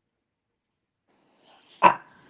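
A single short dog bark near the end, after more than a second of silence.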